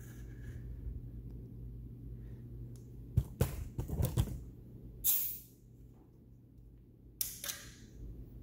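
A few sharp handling clicks and knocks, then two short hisses of air about two seconds apart, typical of a compression tester's release valve letting the trapped cylinder pressure out after a reading. A steady low hum runs underneath.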